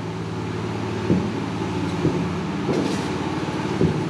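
Steady low hum of machinery running at one even pitch.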